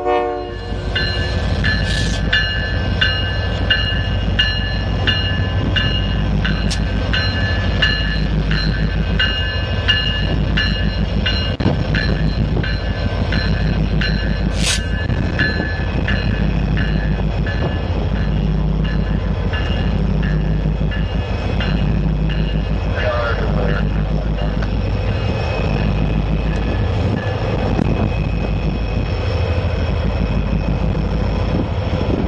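Norfolk Southern diesel-electric locomotives running at low speed close by, their engines giving a steady deep rumble. A horn blast cuts off right at the start. A regular ringing, typical of the locomotive bell, repeats through most of the first two thirds, and a brief sharp hiss comes about halfway through.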